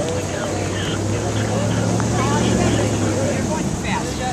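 A motor vehicle's engine passing close by: a low, steady hum that swells to its loudest in the latter half and then fades.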